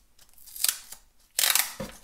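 Grey duct tape being pulled off its roll and torn by hand: two short noisy pulls, the second, about a second and a half in, the louder and longer.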